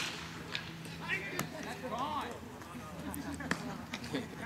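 A bat hits a baseball with one sharp crack right at the start, with a brief ring after it. People's voices calling out follow a second or two later, along with a few faint knocks.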